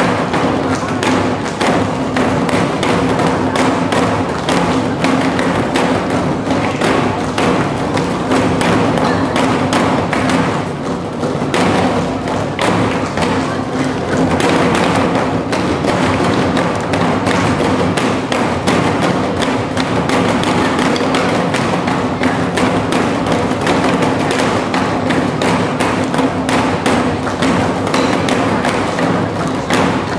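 Nanta drum ensemble beating sticks on barrel drums in a fast, unbroken stream of strokes, over a backing music track with steady held notes.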